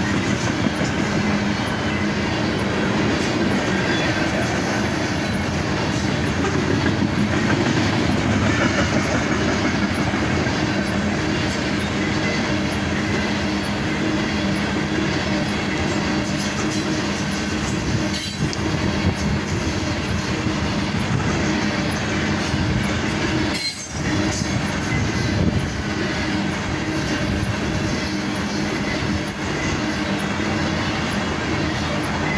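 Loaded aluminium coal gondolas of a freight train rolling steadily past: steel wheels running on the rail with a continuous rattle, over a faint steady low hum.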